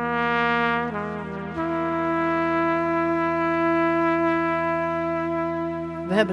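Solo trumpet playing a few slow notes, the last one held steadily for about four seconds, over a low steady hum.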